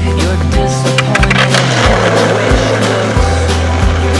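Rock song with a steady beat. From about one and a half to three seconds in, skateboard wheels rolling on asphalt are heard over the music.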